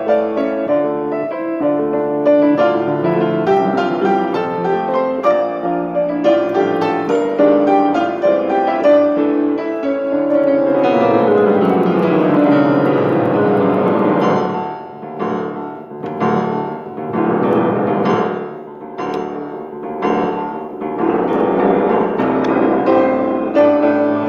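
Upright acoustic piano played solo in a contemporary piece. Rapid running notes give way to a long descending run, then a series of separate chords struck at intervals of well under a second, before the dense figuration returns near the end.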